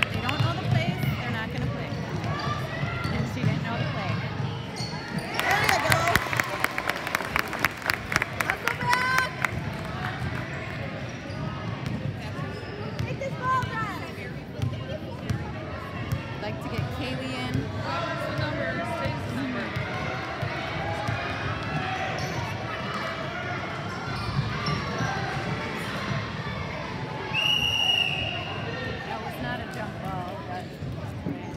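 Basketball bouncing on a hardwood gym floor as players dribble, echoing in the gym, with a dense run of sharp strikes about six seconds in. A referee's whistle is blown once, for about a second, near the end.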